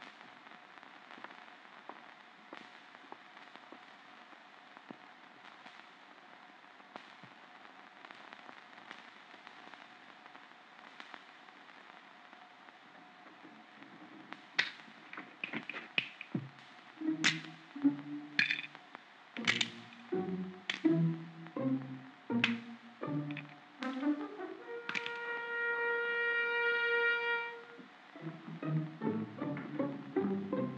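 Near-quiet film soundtrack hiss with a faint steady hum for the first half. About halfway in, orchestral score music begins: a run of sharp percussive hits and brass stabs, then a long held brass note near the end.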